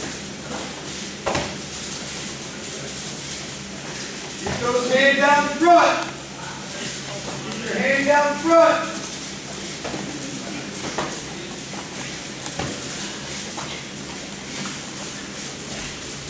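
Wrestlers working on a wrestling mat: scuffing and a few dull knocks of bodies and shoes on the mat over a steady low hum, with two short stretches of a voice.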